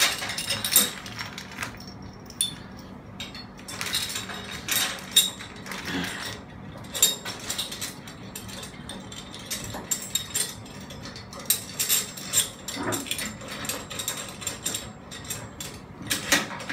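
Metal clamp parts, bolts and nuts clinking and clicking irregularly as a steel clamp is fitted by hand onto a metal support bar.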